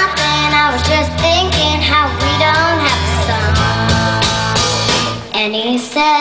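A young girl singing into a microphone over an instrumental accompaniment with a steady bass line. The accompaniment drops away briefly near the end while her voice carries on, then comes back.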